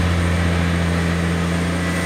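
Heavy diesel engine running steadily, a constant low drone with a hiss over it.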